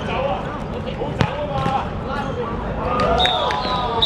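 A football struck hard with a single sharp thud about a second in, a shot on goal on a hard court, among players' shouting voices. Near the end a steady high whistle tone sounds as the goal goes in.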